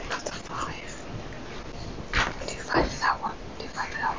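Quiet murmured talk and whispering among people at the tables, with a few louder syllables about two and three seconds in.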